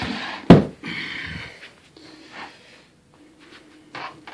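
A single heavy thump about half a second in, followed by soft rustling and scraping, as the carpeted wooden pet ramp is handled; a few light clicks near the end.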